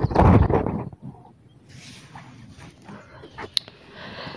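Loud rustling and knocking right at the microphone for about the first second, as the camera is handled; then quiet, with one sharp click near the end.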